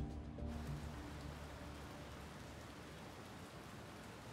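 Background music fading out in the first second, giving way to a faint, steady hiss of rain.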